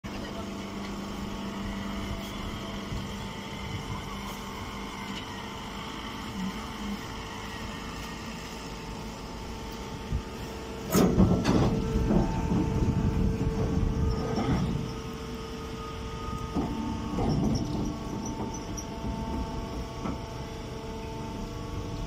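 Hydraulic straw baler running with a steady hum from its electric motor and pump. About halfway through comes a few seconds of louder knocking and rustling as a bale is handled at the machine, and a shorter burst follows later.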